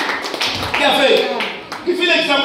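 A man's voice over a PA system in a hall, with sharp taps or claps cutting through it.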